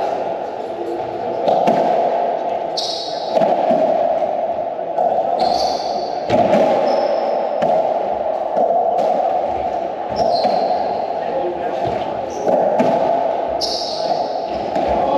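Racquetball rally: the ball knocking sharply off racquets and the court walls every second or so, each hit echoing in the enclosed court, with short high squeaks of sneakers on the wooden floor between hits.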